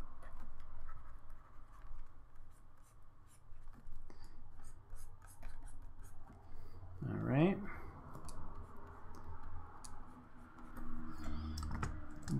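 Stylus scratching and tapping on a drawing tablet as brush strokes are laid in, with many short light clicks throughout. A brief murmured voice rises in pitch about seven seconds in.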